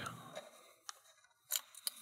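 A few light metallic clicks of steel lock-picking tools being set down and picked up: a sharp tick about a second in, then two more near the end.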